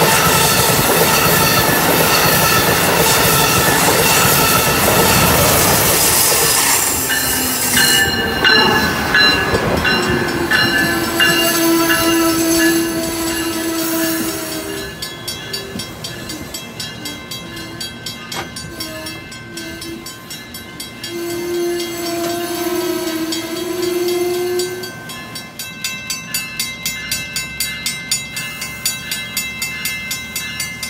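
An Amtrak Acela Express trainset passes at speed with a loud rush of wheel and air noise that fades about eight seconds in. A train horn then sounds a long blast from about ten seconds in and another from about twenty-one seconds in, as an Amtrak Regional approaches. Near the end the wheels of passing Amfleet coaches click over rail joints at a steady rhythm.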